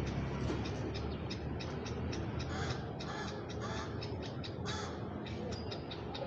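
A bird cawing a few short, harsh times in the background, over a steady low hum and a scatter of faint clicks.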